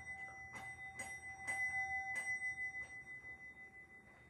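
A small novelty 'ring for sex' hand bell is rung with several quick strikes in the first two and a half seconds. Its clear, high ringing tone hangs on and fades out near the end.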